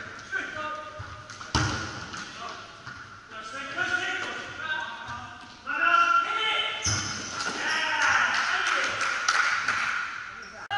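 Players calling and shouting to each other during an indoor football game in a sports hall, with thuds of the ball being kicked and bouncing on the hard court floor, two loud ones about 1.5 seconds in and near 7 seconds.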